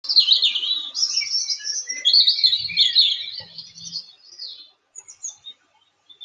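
Birdsong: a busy run of rapid high chirps and whistles that dies away after about four and a half seconds.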